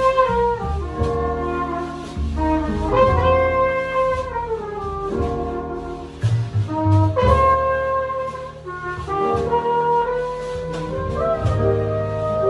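Live jazz combo: a flugelhorn plays the melody in long held notes, some sliding down at their ends, over plucked upright bass, piano and drums.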